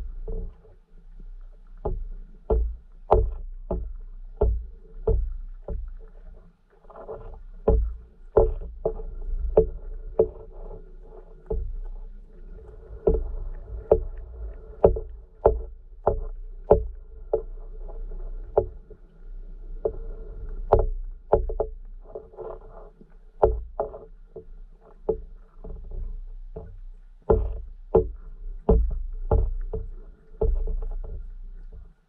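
Underwater sound picked up through a submerged camera: irregular muffled knocks and clicks, about one or two a second, over a low rumble.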